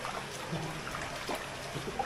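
Steady splashing hiss of hot-spring water flowing and trickling into an outdoor pool.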